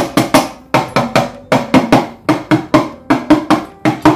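Brass udukkai (hourglass hand drum) played by hand: a quick, even rhythm of strokes, about four to five a second and often in pairs, each with a short pitched ring.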